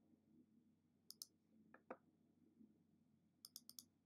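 Faint clicks of a computer mouse over near silence: two about a second in, two more near the two-second mark, and a quick run of about five near the end.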